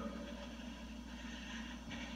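Faint steady background room tone: a low hum and a light hiss, with no other clear event apart from a small tick near the end.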